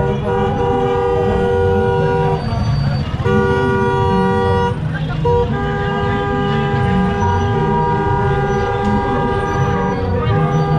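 Car horns held down in long two-tone blasts, breaking off briefly about two and a half and five seconds in and then sounding on, over the low rumble of vehicle engines: the celebratory honking of a slow-moving motorcade.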